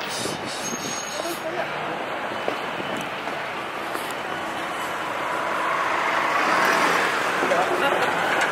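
Street traffic noise: a steady hum of passing vehicles that grows louder over the last few seconds as a vehicle approaches.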